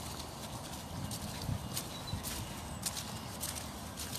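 Footsteps on a muddy, rutted field track, a step roughly every half second, over a low rumble.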